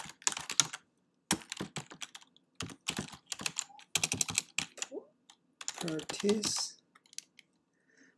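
Typing on a computer keyboard: quick runs of key clicks with short pauses between them, as a shell command is typed out.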